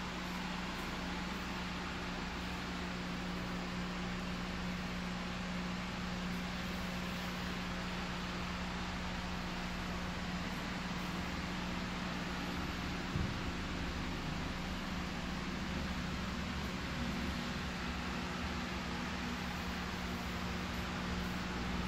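Grow-room fans running: a steady airy rush with a constant low hum underneath.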